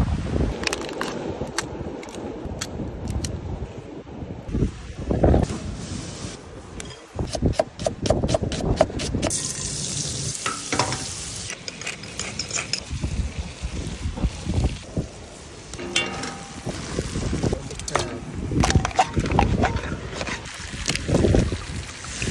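A run of cooking sounds: food sizzling in a hot frying pan on a gas camp stove, with sharp knocks and clicks in between, and liquid poured into the sizzling pan near the end.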